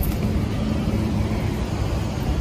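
Steady motor-vehicle noise: a car's engine running amid street traffic, an even rumble with a faint low hum.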